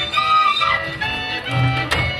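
Live folk dance music from a small traditional band: held melody notes from fiddles and reed instruments over a bass line that comes back in short repeated notes.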